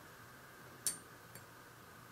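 A single sharp click as the small oil-container part is pressed into place on the model engine block, followed about half a second later by a much fainter tick, over quiet room tone.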